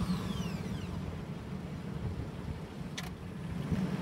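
Chevrolet Astro van's V6 engine idling steadily just after starting, with a falling whine that fades out in the first second and a single click about three seconds in.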